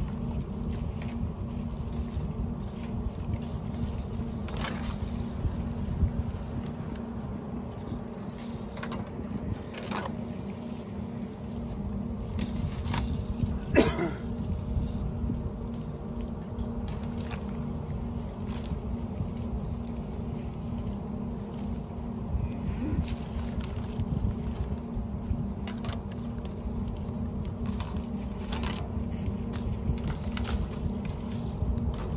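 Steady wind rumbling on the microphone, with scattered clicks and rattles from a polywire electric-fence reel being wound and the wire pulled tight. About halfway through there is a brief run of rapid ticks, the loudest sound.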